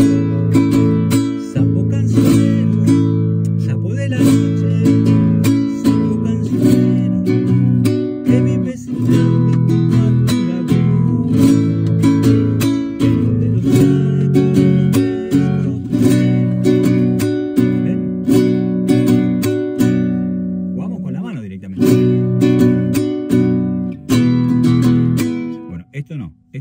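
Nylon-string classical guitar strummed in a zamba rhythm, its downstrokes played with the whole hand rather than the thumb, with a muted slap on one beat of each pattern. A man sings a zamba along with it.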